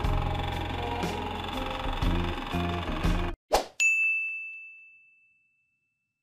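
Background music that cuts off suddenly about three seconds in, followed by a brief whoosh and a single bright ding that rings and fades away over a second or so: the sound effects of an animated like-button end screen.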